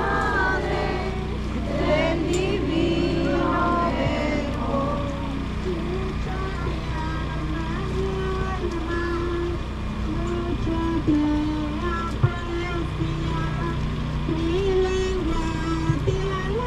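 Procession crowd voices for the first few seconds, then a slow melody of held notes, a hymn sung or played, over a steady low hum, with a single sharp click about three-quarters of the way through.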